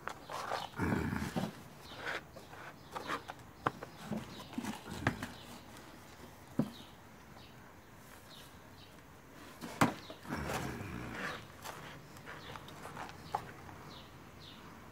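Potting soil being stirred and scooped in a plastic basin: gloved hands and a plastic scoop scraping and rustling through the soil against the tub, with scattered clicks and one sharp knock a little before ten seconds in.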